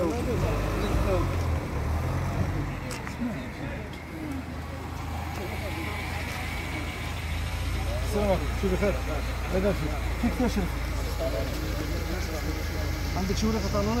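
Car engines idling in a low steady rumble, with several people talking over them.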